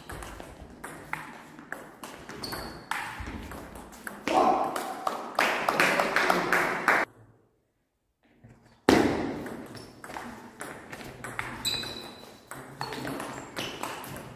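Table tennis rally: the ball clicking off the bats and the table in quick succession. A louder stretch of noise comes near the middle, followed by a second or two where the sound drops out almost completely.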